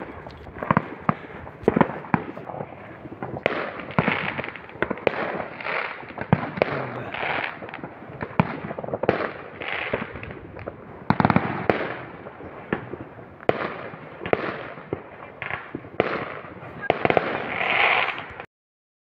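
Many fireworks going off: an irregular string of sharp bangs and crackling bursts, with the loudest cluster about eleven seconds in and another near the end.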